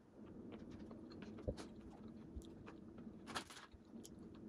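Faint chewing of a small chocolate cake bite, with scattered soft mouth clicks.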